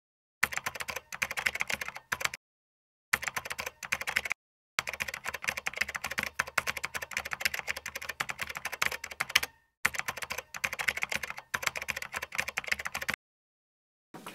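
Rapid key clicks of typing, in quick runs with a few brief pauses. This is a typing sound effect that keeps pace with text appearing letter by letter, and it stops a little before the end.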